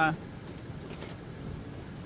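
A man's voice ends a word, then a pause filled with steady outdoor background noise, a faint traffic-like hum.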